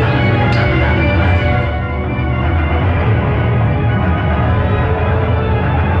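Loud music played over a DJ sound system, with a heavy, steady bass.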